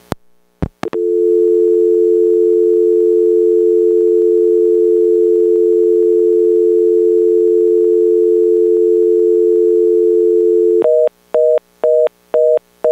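Telephone line tones: a few clicks, then a loud, steady dial tone from about a second in. Near the end it changes to a fast busy (reorder) signal, about two beeps a second, the sound of an open phone line after the call has ended.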